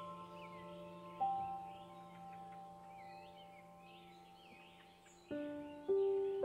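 Quiet ambient relaxation music of bell-like chime notes that ring on and slowly fade, with a new note about a second in and two more near the end. Small birds chirp softly throughout.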